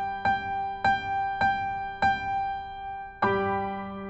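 Piano accompaniment for a vocal warm-up exercise at tempo 100: notes struck evenly about every 0.6 s over a sustained low note, then a fuller chord struck about three seconds in. No singing voice is heard.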